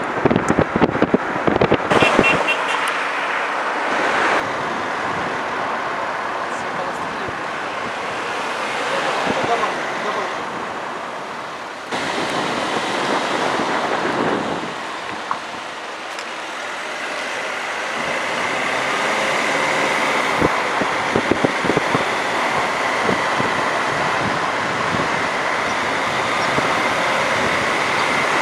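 Road and wind noise of a moving car heard from inside, with street traffic around it. A thin steady high tone joins in about two-thirds of the way through.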